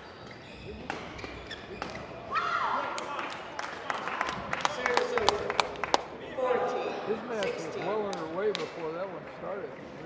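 Badminton rally on a hall court: a run of sharp racket hits on the shuttlecock mixed with shoe squeaks on the court floor in the first six seconds, then a wavering voice as the point ends.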